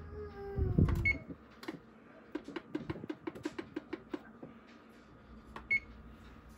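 Electric range's oven control panel being set: a short electronic keypad beep, a rapid run of about a dozen even ticks, then another beep near the end as the oven timer is set. A falling tone and a low thump come in the first second.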